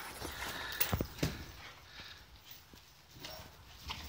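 Boxer dogs scampering on grass after a balloon: a few quick soft thuds and patters of paws about a second in, then quieter.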